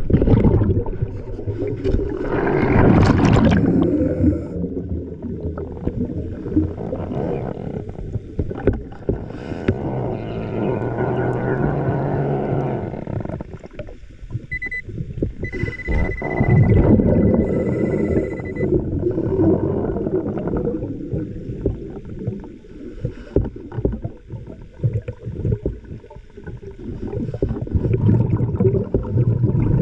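Underwater sound of a diver: loud rumbling surges of exhaled air bubbles every several seconds, muffled through the water. A thin steady high beep sounds for about three seconds near the middle.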